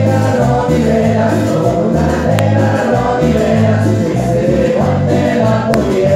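Live band playing, with several male voices singing together over a bass line, congas and keyboard, at a steady loud level.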